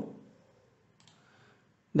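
A single faint computer mouse click about a second in, otherwise near silence.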